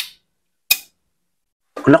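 Two short, sharp metallic clicks about 0.7 s apart from a Suzuki Satria 120 gearshift mechanism being worked by hand at the shift drum star and stopper roller. The roller sits very high, which makes the shifting stiff.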